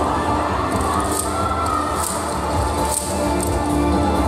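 Loud yosakoi dance music with a steady beat, voices shouting along, and sharp high clacks about once a second from the dancers' naruko wooden clappers.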